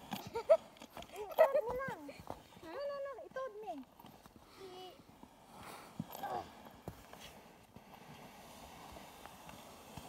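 A plastic sled carrying a rider and a dog being pushed off over snow, with crunching steps in the snow and then a steady scraping hiss as it slides. For the first few seconds a voice calls out over it, rising and falling in pitch.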